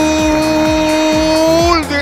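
Sports commentator's long drawn-out goal cry, "gooool", held loud on one steady pitch and falling away shortly before the end, over background music with a beat.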